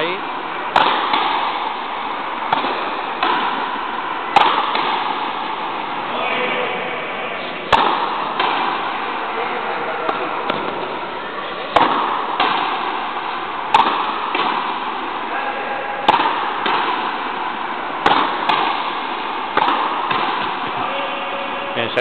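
Frontenis rally: the rubber ball struck by rackets and hitting the fronton walls. It makes sharp cracks every one to two seconds, often in pairs under a second apart, each fading off quickly, over a steady hubbub of voices.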